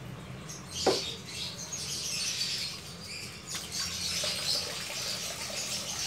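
A 40-day-old Persian kitten giving thin, high squeaky mews while being lathered and washed, over wet rubbing and splashing of soapy fur. The sharpest cry comes about a second in and is the loudest sound.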